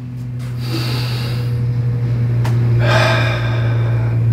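A man taking a deep breath: a long inhale starting about half a second in, then a long exhale near the end, over a steady low hum.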